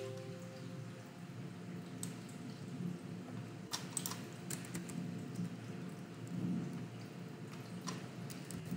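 A few sparse computer keyboard keystrokes, a small cluster about midway and one near the end, over a steady low hum.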